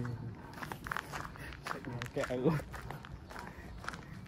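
Footsteps of a person walking on stone paving, with a short bit of voice a little past two seconds in.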